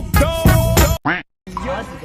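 Background music with a beat and a voice over it cuts off abruptly about a second in. After a short voice fragment and a moment of dead silence, a person's voice follows.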